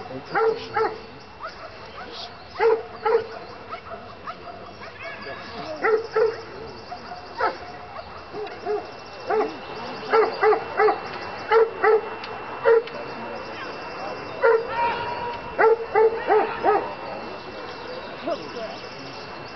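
Bouvier des Flandres barking in quick runs of two to five sharp barks, with short gaps between runs, as it works against the helper in a Schutzhund protection exercise.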